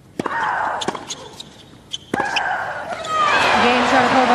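Tennis racket strikes the ball just after the start, followed by a player's shriek. A second racket hit about two seconds in comes with a longer, falling shriek. After that the crowd cheers and applauds loudly.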